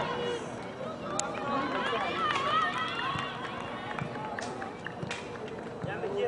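Many overlapping voices of players and onlookers calling and shouting across an outdoor soccer field, with a few sharp clicks scattered through.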